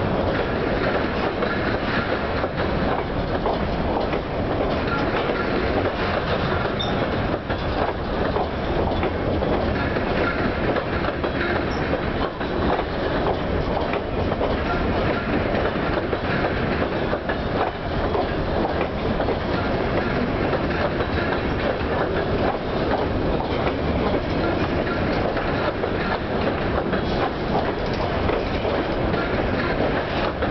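Freight train's covered hopper cars rolling past close by: a steady rumble with a continuous clatter of steel wheels on the rails.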